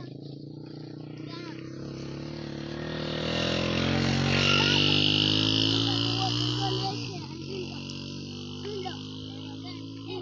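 An engine running steadily, growing louder to a peak around the middle and then fading with a drop in pitch about seven seconds in, as a vehicle does when it passes close by.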